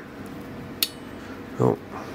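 A single sharp metallic click from a handheld metal hole-punch tool being worked on a steel pick blank, with a short ring after it. The blank is not clamped firmly in the punch.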